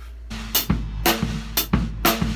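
Acoustic drum kit playing a steady rock groove: hi-hat on the quarter notes about every half second, a snare backbeat, and the bass drum placed off the beat on the second partial of eighth-note triplets.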